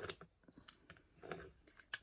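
A small plastic toy rolling pin being pressed and rolled over soft clay on a wooden board: a few faint, scattered clicks and light rubbing.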